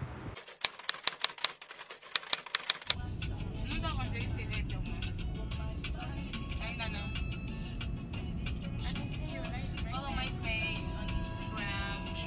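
A quick run of about ten keyboard-typing clicks, a sound effect for text being typed into a search bar. Then, from about three seconds in, music with a singing voice plays over the low rumble of a car in motion.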